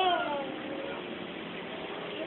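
A high, whining call that rises and falls in pitch right at the start, followed by a fainter call falling away within the first second.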